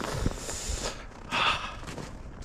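A person breathing close to the microphone, with a short breathy exhale about a second and a half in.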